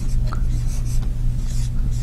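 Dry-erase marker writing on a whiteboard: faint squeaks and scratches of short pen strokes. A steady low hum runs underneath.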